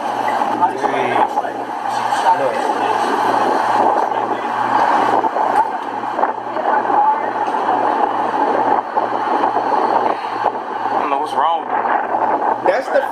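City street sound from a handheld outdoor recording: passing traffic and indistinct voices, with a low pulse repeating a little over twice a second.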